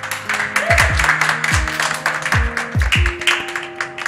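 Audience clapping and cheering over a pop music track with a steady drum beat; the clapping dies down near the end.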